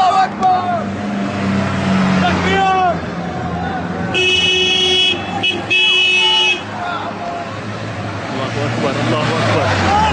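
Vehicle horn sounding in two long blasts, about a second each, starting about four seconds in, over the steady engine and road noise of a moving car. Men's voices are heard near the start and again near the end.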